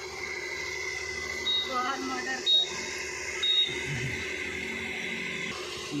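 Faint background voices over a steady hiss, with three short high beeps about a second apart in the middle.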